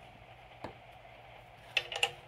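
Faint handling clicks of a pneumatic quick-connect hose fitting, then a sharper metal click with a brief ring near the end as the male plug is pushed into the quick coupler.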